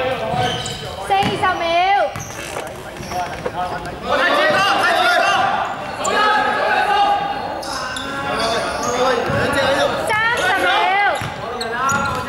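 Men shouting calls to one another during a basketball game, with a basketball bouncing on the wooden court, all echoing in a large gym.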